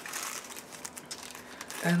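Crinkling of a clear plastic wrapper being handled and pulled open to get an item out, a run of small irregular crackles.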